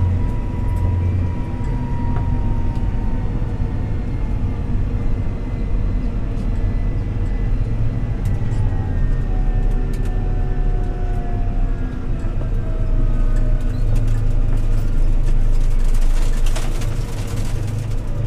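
Fendt 724 Vario tractor's six-cylinder diesel engine running steadily under way, heard from inside the cab, with a faint whine that slowly falls in pitch. Near the end a louder rush as oncoming cars pass close by.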